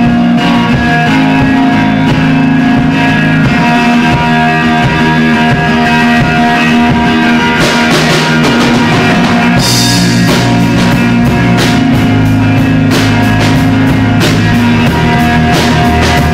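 A rock band playing live: guitar and bass with a drum kit, the drums getting busier from about halfway through.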